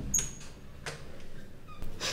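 Metal lever door handle turned and its latch clicking with a short metallic ring, then a second click and a brief squeak near the end as the door moves.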